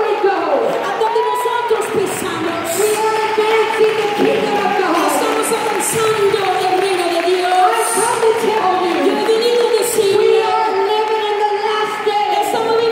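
Amplified voices in a large, echoing hall: long held sung notes over the voices of a crowd.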